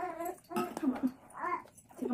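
Three short whining vocal calls in a row, each rising and falling in pitch.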